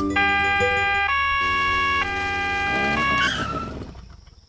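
Cartoon police siren in a two-tone pattern, switching between a higher and a lower pitch about once a second, then fading out near the end.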